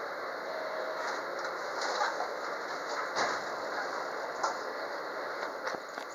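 Inside a JR West 213-series electric train car as it starts moving slowly again: a steady noise in the cabin, with a brief tone near the start and a few sharp clicks later on.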